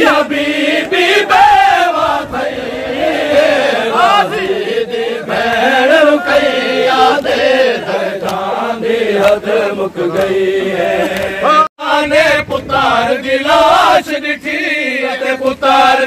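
A crowd of men chanting a noha (mourning lament) together, with rhythmic chest-beating slaps of matam running under the voices. The sound drops out for an instant about three-quarters of the way through.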